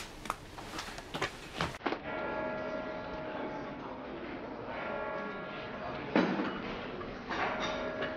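Bells ringing in several steady, overlapping tones over street background noise, after a few clicks in the first two seconds. One louder sudden sound comes about six seconds in.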